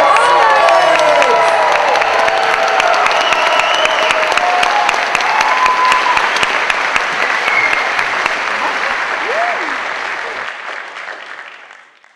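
Theatre audience applauding at the close of a stage act, a thick steady clapping with a few whoops and shouts early on, fading out over the last couple of seconds.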